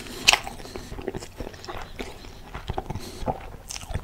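A man chewing a mouthful of soft bun and turkey burger with cheese close to the microphone: a run of short moist mouth clicks, the loudest about a third of a second in.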